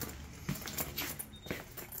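Faint footsteps on a tile floor, a few steps about half a second apart.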